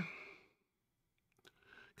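Near silence: a short breathy exhale trails off at the start, and two faint ticks come just before the voice resumes.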